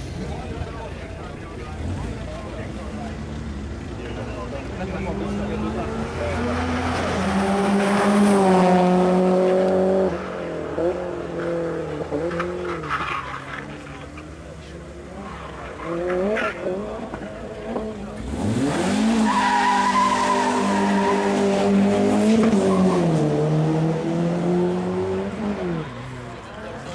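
A hillclimb race car's engine revving hard under full throttle as it climbs past. The pitch rises and then falls sharply at each gear change. It is loudest in two long pulls, about eight to ten seconds in and again from about nineteen to twenty-three seconds in.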